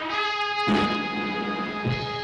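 Orchestra opening an overture: brass holding sustained chords, with two low drum strikes, one under a second in and one near the end.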